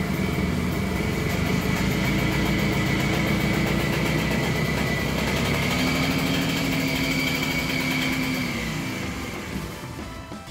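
Single-cylinder air-cooled engine of an old Harley-Davidson golf cart running on a newly replaced piston as the cart drives off. The engine note rises a little about six seconds in, then fades as the cart moves away near the end.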